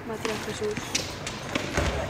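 Goalball being thrown and hitting the hard court floor several times, with sharp knocks and the rattle of the bells inside the ball. A heavier low thump comes near the end, as the ball reaches the defending side.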